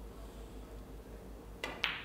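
Two sharp clicks about a quarter of a second apart near the end: a snooker cue striking the cue ball, then a second ball click. Before them only quiet room tone with a low hum.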